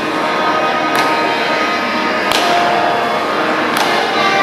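Violin played with the bow in Carnatic style, a run of sustained notes, with three sharp percussive taps about a second in, just past two seconds and near the end.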